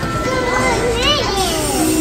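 A singing voice over music, of the kind played by a holiday animatronic figure such as this Minion.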